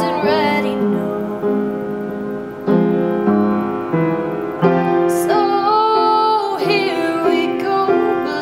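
Upright piano played in steady repeated chords, with a woman's voice singing over it, holding one long note about five seconds in.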